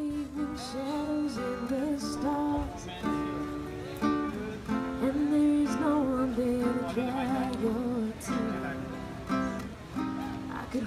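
Live song: a woman singing into a microphone while playing a classical guitar, her voice and guitar carried through a small PA.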